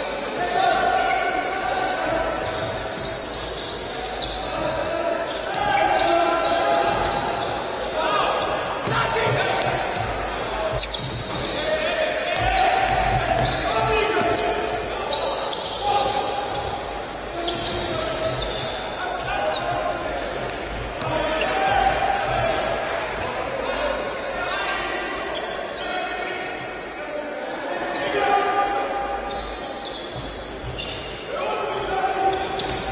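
Basketball dribbled and bouncing on a wooden court in a large sports hall, with sharp knocks at irregular intervals. Voices from players, coaches and spectators call out throughout, echoing in the hall.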